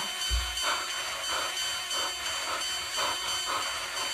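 A man panting hard, quick noisy breaths about three a second, out of breath after screaming. A brief low thud comes just after the start.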